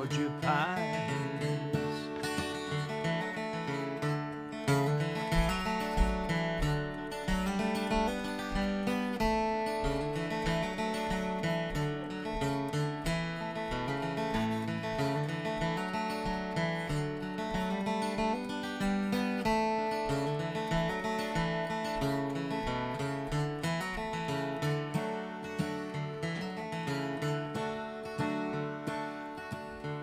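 Solo dreadnought acoustic guitar playing an instrumental break of a country song, strummed and picked in a steady rhythm through changing chords.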